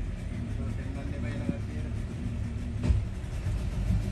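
A steady low rumble, like a motor running, with faint indistinct talking early on and a couple of short knocks.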